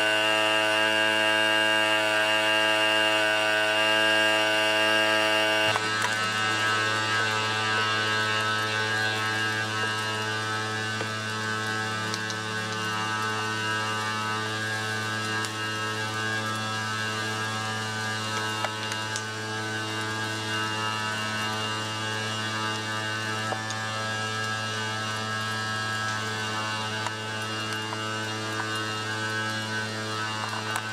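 An engine running at a steady speed, a constant droning hum with no revving. It drops somewhat in level about six seconds in.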